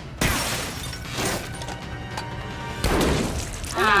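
Film soundtrack from an action scene: music under crashing, smashing impact effects, with heavy crashes just after the start and again about three seconds in.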